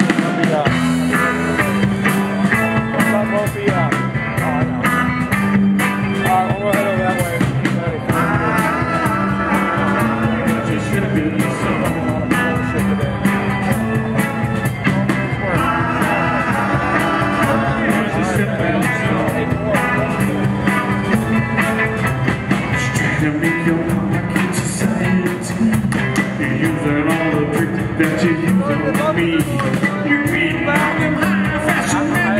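Live rock band playing a song through PA speakers, with electric guitars, drum kit and a sung vocal. The band kicks in right at the start with a steady beat.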